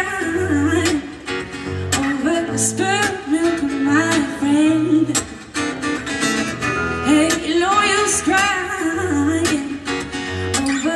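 A woman singing a pop-folk song live, with her own strummed acoustic guitar.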